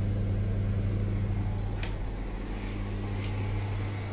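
Steady low electric hum of aquarium air pumps running in a room full of tanks, with a faint tick or two near the middle.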